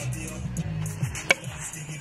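A single sharp crack of a homemade 100 cm bat hitting a tossed ball about a second and a half in, over background music with a steady bass line.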